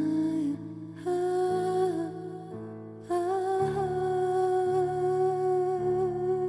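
Meditative healing music: a woman's wordless, hummed voice holds long notes over sustained low chords. Two short phrases with slight downward bends come in the first three seconds, then one long note is held to the end.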